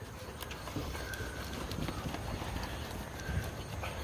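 A towel rubbing over a wet St. Bernard puppy's fur, a steady soft rustle with a few light clicks.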